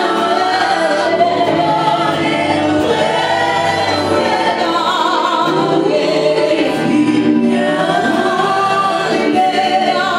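A woman singing a Swahili gospel song live, held notes with vibrato, backed by a group of singers and a band.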